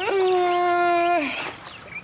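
A woman's single drawn-out vocal sound, like a waking moan or stretch, held on one steady pitch for about a second and then dropping away, as she wakes from a nap.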